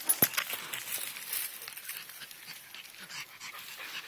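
A dog panting, with one sharp knock just after the start.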